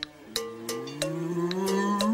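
A single long cow moo, drawn out and rising slowly in pitch, with a small upward bend at its end, over light, regular ticks about three times a second.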